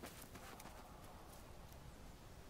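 Near silence: a faint steady hiss with a few soft clicks.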